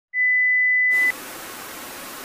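An electronic beep: one steady high pure tone held for about a second, then cut off and replaced by a quieter even hiss of static.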